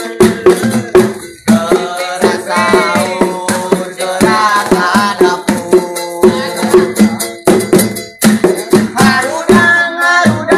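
Sahur-patrol music: improvised hand percussion, including a tin-can drum and rattles, beaten in a steady quick rhythm under a sung melody.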